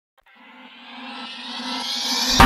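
Intro of an EDM track: a synth build-up with a rising swept hiss that grows steadily louder over a held low note.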